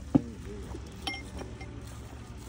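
A champagne cork pops sharply just after the start, and about a second later glass clinks once with a short ring.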